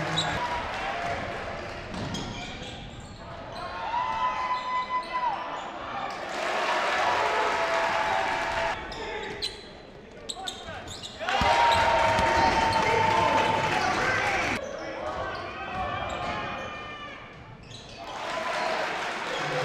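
Game sound of a basketball game in a gym: a basketball bouncing on the hardwood floor amid players and spectators calling out, echoing in the hall. The sound changes abruptly several times, as if from edits between plays.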